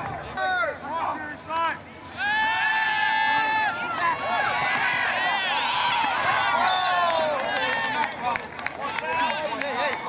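People yelling at a football game: one long held shout about two seconds in, then many voices shouting over each other through the middle of the play, thinning out near the end.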